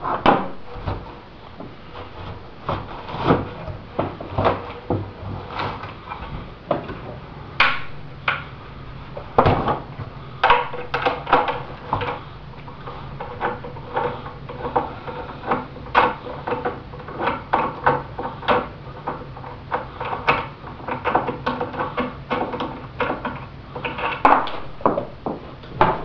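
Irregular clicks, taps and clinks of a screwdriver and small metal screws on a workbench, as the screws are taken out of a bolted fiberglass fuselage mold.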